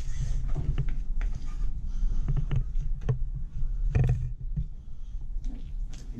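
Butchering a hanging deer with a fillet knife: close handling and rustling with a steady low rumble, and scattered clicks and knocks, the loudest about four seconds in.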